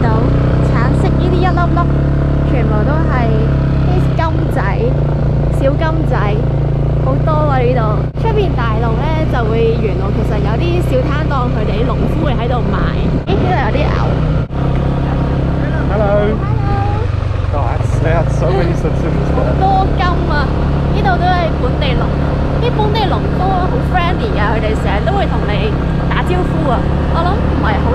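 Small motorbike engine running steadily under way, a constant low drone with a few brief dips in level, as two people talk over it.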